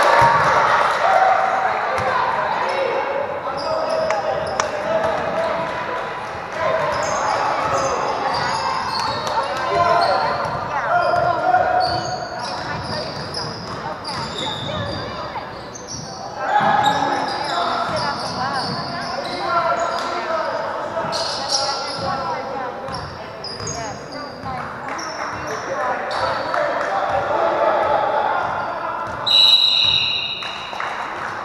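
Basketball game sounds echoing in a large gymnasium: a ball bouncing on the hardwood court, short high sneaker squeaks, and indistinct shouting and chatter from players and spectators.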